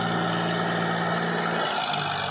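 Tractor diesel engine running steadily at low speed, its note shifting slightly near the end.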